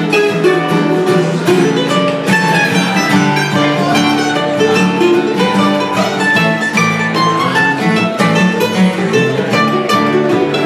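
Mandolin and acoustic guitar playing together in an instrumental passage, a steady stream of quick picked notes over a strummed guitar rhythm, with no singing.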